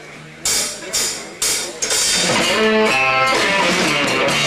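A live rock band starting a song: three sharp percussive hits about half a second apart, then electric guitar, drums and the rest of the band come in together a little under two seconds in.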